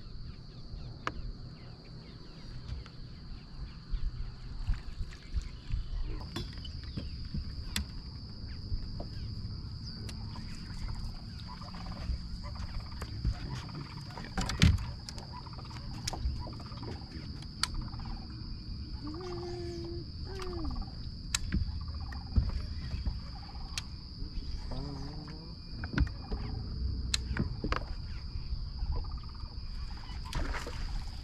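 Open-water ambience on a bass boat: a steady high-pitched whine that grows louder about six seconds in, over a low rumble. Scattered light clicks and knocks come from the angler casting and working the rod and reel, and a few short low calls are heard in the second half.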